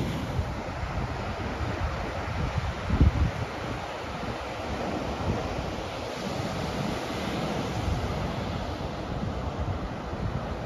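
Ocean surf breaking and washing onto a sandy beach, with wind buffeting the microphone in low rumbles; one louder low thump of wind comes about three seconds in.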